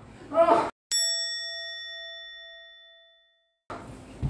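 A single bell struck once about a second in, one clear ring with bright overtones that dies away over two to three seconds. It sits between abrupt cuts to dead silence, so it is an edited-in bell sound effect.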